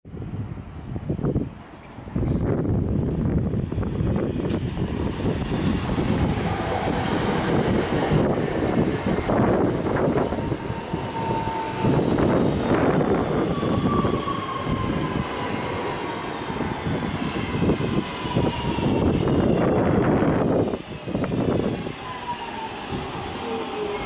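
Class 323 electric multiple unit arriving and slowing along the platform, with a loud continuous running rumble. Over it are whining motor tones that fall in pitch several times as the train slows.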